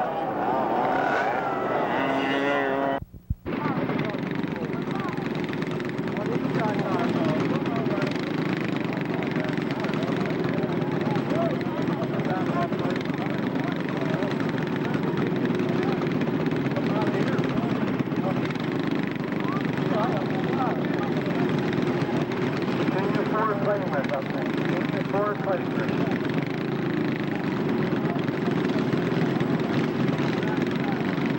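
Go-kart engines running on a dirt track, rising and falling in pitch, mixed with spectators talking. The sound drops out briefly about three seconds in, at a cut in the tape.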